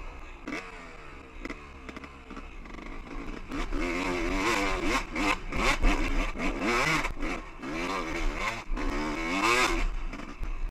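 Two-stroke Honda dirt bike engine ridden up a steep, rocky single-track climb. It runs at low throttle for the first few seconds, then revs up and down repeatedly and louder from about four seconds in as the rider works the throttle. Short knocks from the bike going over rough ground come through between the revs.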